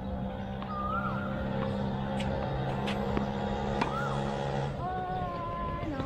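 Steady low engine hum, like a motor vehicle running nearby, that cuts out about five seconds in. A few sharp knocks and short chirps sound over it, and a held, higher multi-tone call comes near the end.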